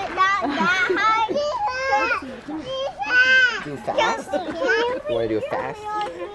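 Young children squealing and laughing in a string of excited, high-pitched vocal bursts while a toddler is swung up in the air.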